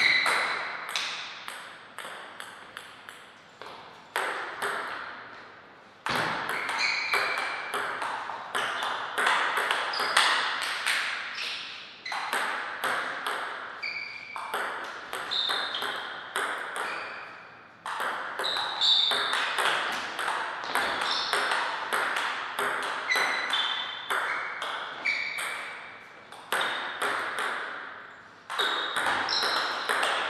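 Table tennis ball being struck back and forth, sharp clicks off the rackets and the table in quick succession. The hits come in rallies separated by brief pauses between points.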